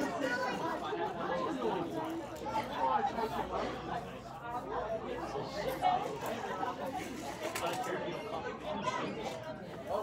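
Indistinct chatter of children's voices, with no words clear.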